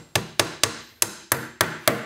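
Hammer tapping nails into wooden beehive frames, a quick run of about seven sharp strikes, roughly three or four a second.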